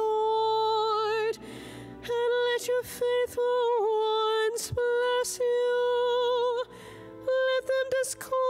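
A woman singing solo into a microphone, long held notes with slight vibrato, with two short pauses between phrases, about a second and a half in and again about seven seconds in.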